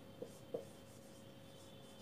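Marker pen writing on a whiteboard, faint: two small taps of the tip within the first second, otherwise a quiet room.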